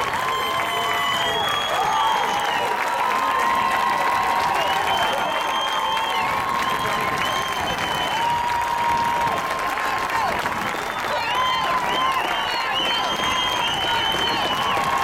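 Steady crowd noise at a football stadium: many voices shouting and calling out at once, some calls held for a second or more, over a constant hiss-like din.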